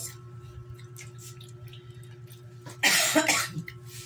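A single loud cough close to the microphone about three seconds in, over a steady low hum.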